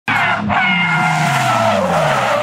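Nissan 350Z rally car sliding sideways with its tyres squealing, over the note of its V6 engine, which falls slowly in pitch as the car scrubs off speed; the squeal breaks off briefly about half a second in and then comes back. The car is sliding out of control.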